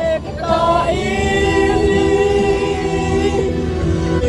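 A group of friends singing together in a van, voices holding long notes in chorus, with the van's engine and road rumble underneath.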